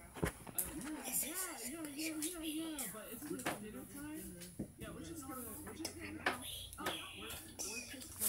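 Indistinct speech: voices talking with rising and falling pitch, not made out as words, with a few sharp clicks among them.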